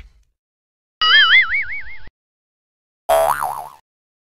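Two cartoon-style sound effects from a subscribe-and-bell outro animation. About a second in there is a warbling tone whose pitch wobbles up and down for about a second. About three seconds in a shorter, brighter warbling tone follows.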